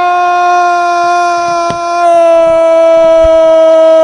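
A male radio football commentator's drawn-out goal cry, one long held note at a nearly steady pitch, sagging slightly and growing a little louder about two seconds in.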